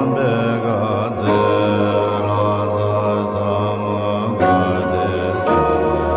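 Devotional music with a chanted mantra sung over a steady low drone, the voice wavering on held notes; the harmony shifts about four and a half seconds in and again just before the end.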